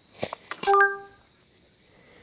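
A couple of light clicks, then a short, bright electronic chime of a few steady stacked tones lasting about half a second: an edited-in sound effect marking a par.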